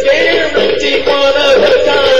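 A man singing a held, wavering note without clear words in a song.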